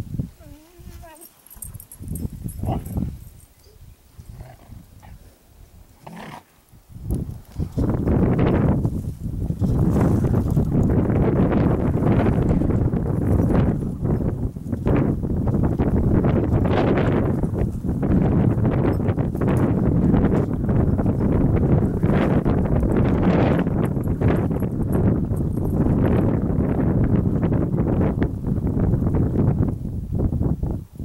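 Burros braying over and over, a loud and continuous racket that starts about seven seconds in after a quieter opening.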